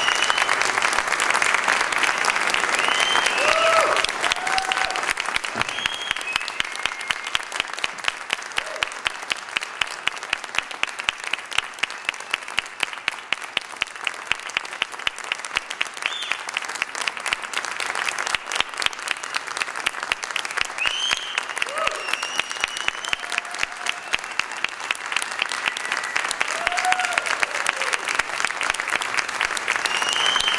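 Audience applauding at the end of a concert band piece, with occasional whooping cheers. One close clapper stands out in a steady rhythm through the middle, and the applause swells again near the end.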